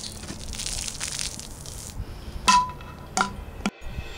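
Shaken bottle spraying its contents in a hissing gush for about two seconds, then two short sharp clinks with a brief ring, well over halfway through.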